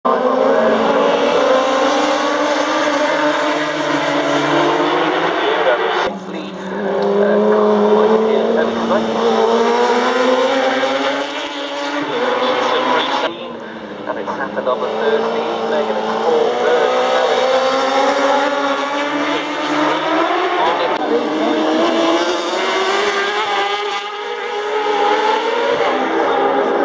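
Road-racing motorcycles accelerating hard out of a bend one after another, each engine revving up and rising in pitch through the gears.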